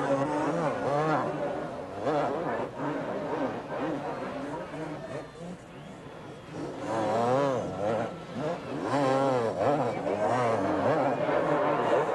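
Two-stroke supercross motorcycles racing, their engines revving up and down over and over as the throttle is worked, quieter for a moment about halfway through.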